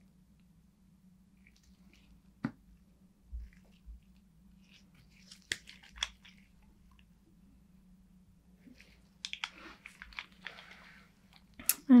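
Small handling noises of plastic alcohol-ink squeeze bottles and gloved hands: a few scattered clicks and taps, then a brief cluster of rustling and clicking near the end, over a faint steady low hum.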